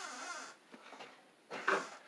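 Faint breathy vocal sounds from a man: a short one at the start and another near the end, with a near-silent pause between.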